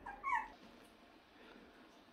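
A bichon frise giving one brief whimper, a short falling whine, near the start.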